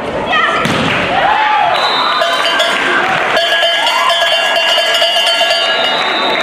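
Volleyball rally in a sports hall: shouting voices and thuds of the ball, then from about halfway a cowbell rung steadily over the voices as the point is won.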